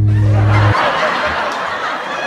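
Laughter from a group of people, loud and irregular. It starts as the band's last held low chord cuts off, under a second in.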